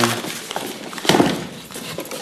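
Rummaging through a cardboard box of small objects and papers: paper rustling and light knocks and clinks of things being moved.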